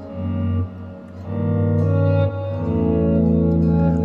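Clean Stratocaster-style electric guitar playing a short run of chords, each left ringing, with changes about a second and two seconds in. The run ends on a held A major chord over a low E bass, closing a modulation from the key of D-flat to the key of A.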